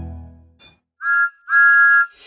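Cartoon steam locomotive's whistle blowing twice: a short toot about a second in, then a longer steady blast. Music fades out just before it.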